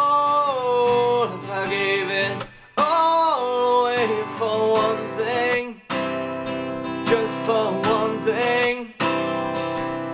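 Acoustic guitar strummed in a steady rhythm, with a man's voice singing long held notes over it. The playing breaks off briefly about every three seconds between phrases.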